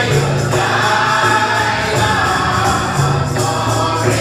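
Mixed church choir, mostly women, singing a gospel song in unison over sustained low accompanying notes that change about once a second.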